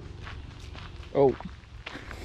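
Footsteps of a person walking on a gravel trail, with a short spoken "oh" about a second in.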